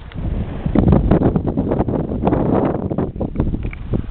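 Wind buffeting the camera microphone, a rough, uneven rumble that rises sharply about half a second in and stays loud and gusty.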